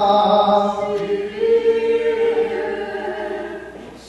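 Voices singing Greek Orthodox liturgical chant a cappella, on long held notes, dying away near the end.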